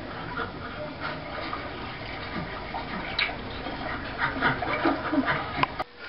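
A film's soundtrack playing on a television and recorded off the set: a steady hiss with faint soft sounds and no clear words. A sharp click comes near the end.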